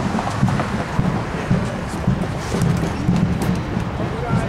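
A supporters' bombo (bass drum) beaten with repeated low strokes, about two a second.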